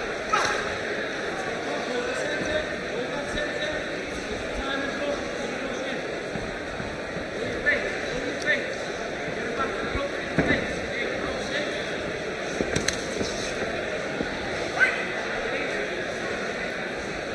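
Steady hubbub of a boxing crowd in a hall, with scattered shouts and a few short, sharp knocks.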